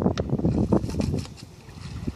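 Wind buffeting the microphone in irregular low gusts, strongest for the first second or so and easing off after that.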